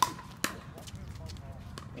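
Two sharp pops about half a second apart, the first the louder: a pickleball paddle striking the hollow plastic ball in a rally.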